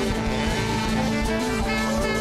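Live band music with sustained melodic tones, in the style of a church worship band.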